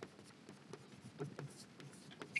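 Chalk writing on a blackboard: a faint, irregular series of short taps and scrapes as capital letters are chalked.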